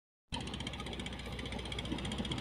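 Engine of a motor cargo boat on the river below, running with a steady, rapid knocking beat; it cuts in abruptly about a third of a second in.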